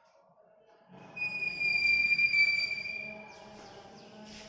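Chalk squeaking on a blackboard as a line is drawn: one high-pitched squeal that starts about a second in, lasts about two seconds and dips slightly in pitch.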